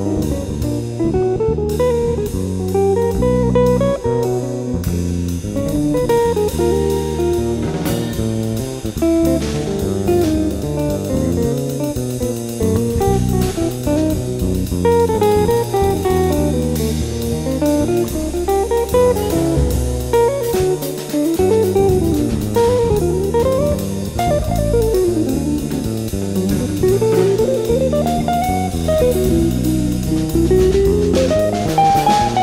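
Jazz trio of guitar, bass and drum kit playing at full tilt, the guitar running fast single-note lines over walking bass and cymbal-driven drums.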